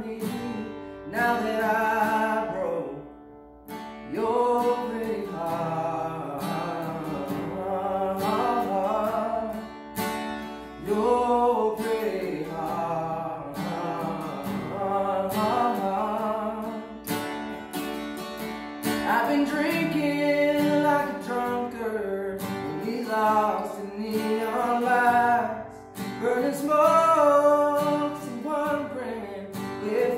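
A man singing a country song while strumming an acoustic guitar, with a brief dip in the sound about three seconds in.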